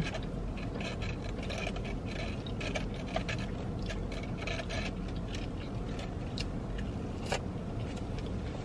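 A person chewing a mouthful of burrito: faint, irregular wet mouth and lip smacks over a steady low hum of the car cabin.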